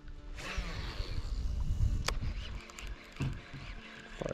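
Background music, with a stretch of hissing noise from about half a second to two seconds in and a single sharp click at about two seconds.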